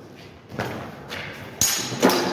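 Fencing footwork on concrete paving: a few soft thuds of steps, then near the end a sharp clash of steel smallsword blades with a brief metallic ring.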